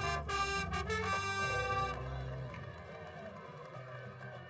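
Marching band playing: the brass section holds loud, full chords, then about halfway through the music drops to a quieter, softer passage.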